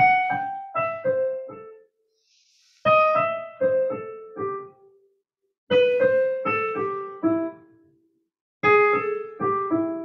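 Digital stage piano in a piano voice, played in four short phrases with brief pauses between them, each phrase falling in pitch. The phrases are broken chords in which each chord tone is approached by a chromatic half step, a jazz approach-note exercise.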